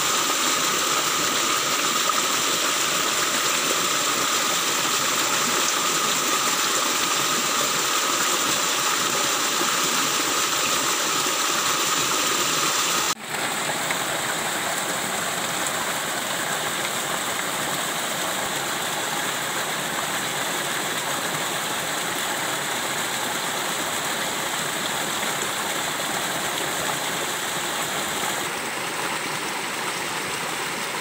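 Stream water rushing steadily over rock, an even continuous rush with a brief dip about halfway through.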